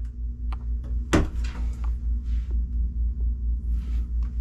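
A wooden cabinet door being handled: a sharp knock about a second in, then a few light clicks. Under it runs a steady, low, pulsing hum.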